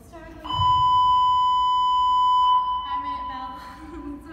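A steady, high electronic beep lasting about two seconds, starting about half a second in with a low thud of feet landing on the gym floor from a stag leap; a woman's voice comes before and after it.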